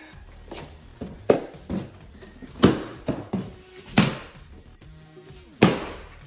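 Plastic packing straps on cardboard boxes being cut one after another with a hand cutter. Each strap gives with a sharp snap, several in all at irregular intervals.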